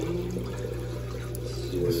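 Aquarium filter running: a steady trickle of moving water over a constant low hum.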